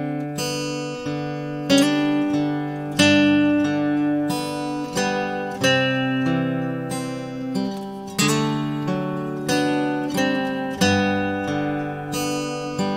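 Instrumental break in a Korean folk song: acoustic guitar strummed and picked, each chord starting sharply and ringing down, a new one about every second, with no vocals.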